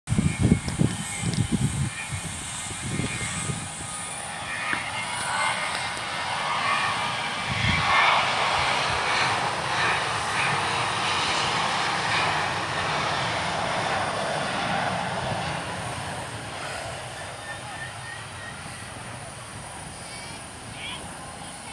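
Jet airliner engines running, the noise swelling about eight seconds in and slowly fading away. Wind buffets the microphone in the first two seconds.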